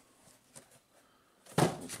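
A single short cardboard knock about one and a half seconds in, as the lid of a cardboard comic-book storage box is taken off.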